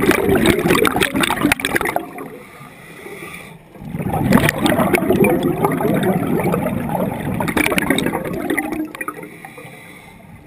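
A scuba diver's exhaled bubbles gurgling and rushing from the regulator, in two long bursts: one ends about two seconds in, and a longer one runs from about four seconds in to near the end, with quieter pauses between.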